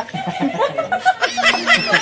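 Several people laughing and chuckling at once, their laughs overlapping.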